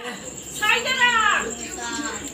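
A high-pitched voice calling out once, its pitch falling over nearly a second, over a steady high-pitched whine.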